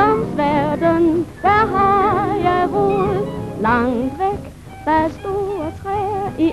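Swing big band playing: a lead melody with wide vibrato over the band, in short phrases with a brief lull about four and a half seconds in.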